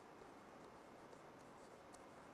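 Near silence: room tone with a couple of very faint ticks.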